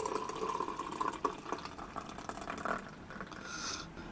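Beer poured from an aluminium can into a glass, a steady gurgling fill that tails off with a short hiss near the end.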